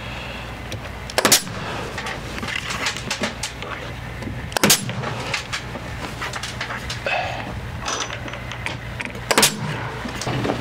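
A nail gun firing three single shots a few seconds apart, fastening vinyl J-channel trim up into the porch ceiling framing.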